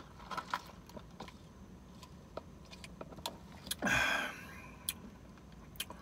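Soda being sipped through a plastic straw from a fountain cup: quiet swallowing and small mouth and cup clicks, with one louder breathy sound about four seconds in.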